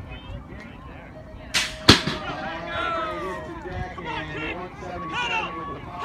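BMX starting gate dropping: a brief rush of air, then a sharp slam of the gate hitting down about two seconds in, followed by spectators shouting and cheering.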